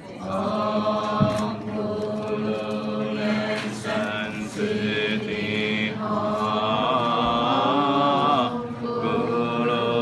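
A group of voices chanting a mantra together, with long held, sung notes over a steady low drone. A brief knock sounds about a second in.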